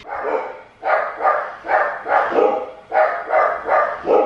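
Pet dog barking over and over, about two to three barks a second.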